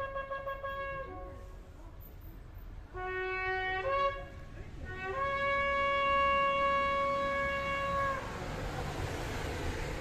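Shofar (ram's horn) sounding the traditional blasts. A wavering blast ends about a second in, then a short lower blast rises in pitch around the fourth second, and a long steady blast is held for about three seconds. A rising hiss follows near the end.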